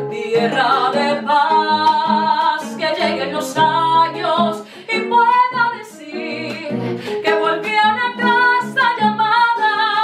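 A woman singing over a classical guitar's plucked accompaniment in bambuco style.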